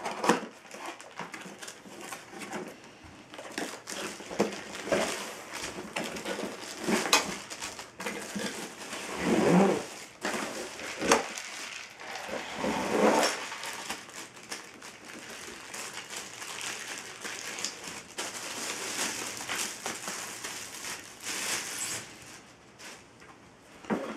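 Cardboard box being opened and a light bar in plastic wrap pulled out of it: cardboard scraping and plastic wrap crinkling and rustling throughout, with many small clicks and two louder swishes near the middle.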